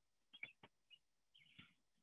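Near silence, broken by a few faint, short clicks and high chirps.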